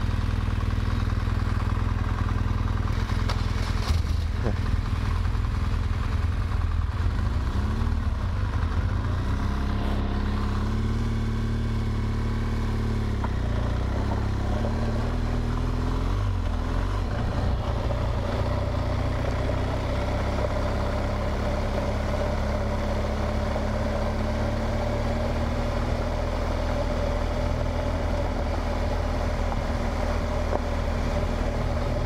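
BMW R1200 GS Adventure's flat-twin boxer engine heard from the rider's own bike, with wind and road noise. Through the first half the engine pitch rises and drops a few times as the bike accelerates through the gears, then it runs steadily at cruising speed.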